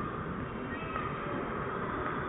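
Steady background noise of a cinema lobby, with a few faint, brief high tones in the middle.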